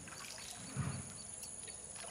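Faint splashing and trickling of water as a bonobo scoops water from a shallow pond with its hand, with one slightly louder splash just under a second in.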